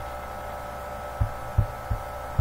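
Steady electrical hum made of several held tones over a low drone. Three short, dull low thumps fall in the second half.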